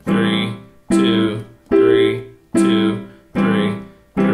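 Yamaha digital piano played with the left hand: C major triad block chords stepping through their inversions, five chords struck about one every 0.8 s, each fading before the next.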